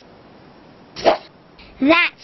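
One short burst of noise, a sound effect as felt-tip pens move back into an open fabric pencil case. A voice starts again near the end.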